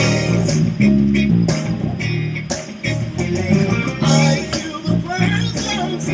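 A Ken Smith Burner six-string electric bass playing low notes along with a gospel recording, with a regular beat of sharp hits and a singing voice in the track.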